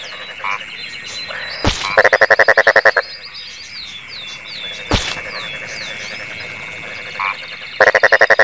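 Frog croaking: a loud, rapid pulsed croak lasting about a second, about two seconds in and again at the end. Between the croaks are fainter high falling chirps over a steady high tone, and two sharp clicks.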